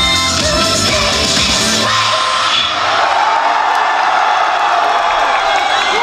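A K-pop song played live over a concert sound system ends about two seconds in, and a large crowd cheers and screams.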